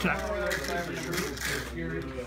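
Indistinct talking at a low level over a steady low hum.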